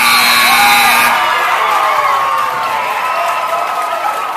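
Gym scoreboard buzzer sounding the end of the game, a steady electric horn that cuts off about a second in. A crowd cheering, shouting and applauding carries on under it and continues after it.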